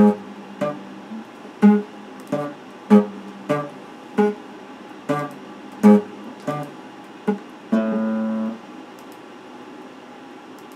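Electric guitar picked in a slow, even pulse of single notes and chords, about three strokes every two seconds. Near the end a chord is held for under a second and then cut off, and the playing stops.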